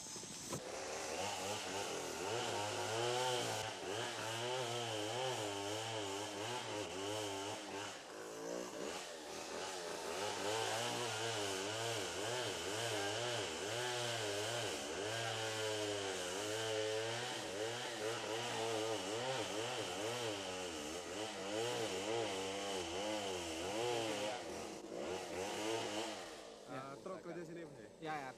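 A chainsaw running, its pitch rising and falling over and over as it is worked. It starts about half a second in, dips briefly about a third of the way through, and fades near the end.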